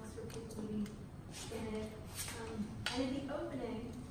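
A woman talking: only speech, with no other sound standing out.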